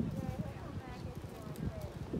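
Indistinct voices of people talking in the background, with low irregular knocks underneath.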